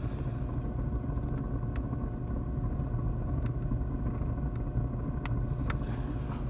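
Outdoor wood boiler's draft fan running: a steady low mechanical hum, with a few faint sharp ticks scattered through.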